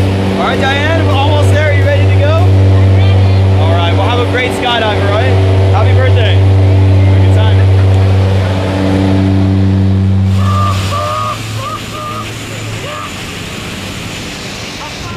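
Steady low drone of the jump plane's engines and propellers inside the cabin, with voices shouting over it. About eleven seconds in the drone drops away, leaving a rushing wind noise.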